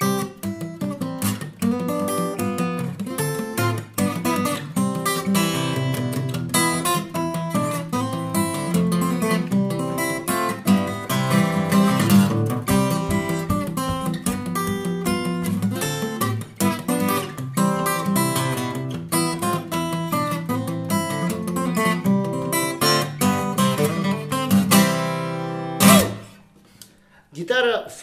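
Fingerstyle playing on a small-bodied Sigma folk-shape acoustic guitar with a spruce top and mahogany body: a steady flow of picked bass notes and melody, with a strong low end and a bright, clear middle. It closes with a sharp final strike about two seconds before the end, which rings and dies away.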